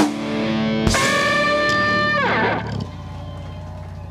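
Electric guitar and band in a musician's monitor mix: a sharp hit about a second in opens a held closing chord, which slides down in pitch and cuts off near three seconds in. A faint low hum remains after it stops.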